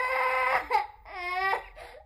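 Two high-pitched crying wails of a small child howling, the second starting about a second in.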